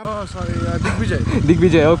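Royal Enfield 650 parallel-twin motorcycle engine idling steadily under a man's voice.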